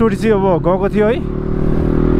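A motorcycle engine running steadily as the bike is ridden along a road, with a man's voice talking over it for about the first second.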